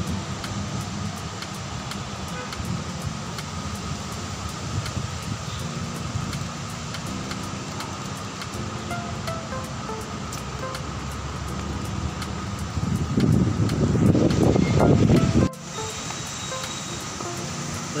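Steady low rumble of a moving vehicle on the road, with faint music over it. The rumble grows louder for a couple of seconds near the end, then drops away suddenly.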